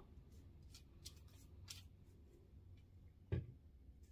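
Quiet kitchen handling as a silicone pastry brush is dipped in a small bowl of beaten egg white and spread on strudel dough: a few faint light ticks, then one sharp knock a little after three seconds in.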